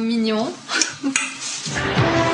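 Clothes hangers clinking and scraping along a wardrobe rail as hanging clothes are pushed aside.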